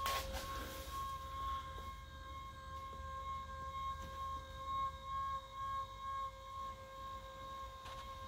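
Electric motor of a Tempur-Pedic adjustable bed base running with a steady whine as it raises the head section of the bed.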